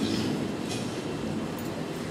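Steady low rumbling room noise of a large hall with a sound system, with no words. A couple of faint, very short sounds come and go partway through.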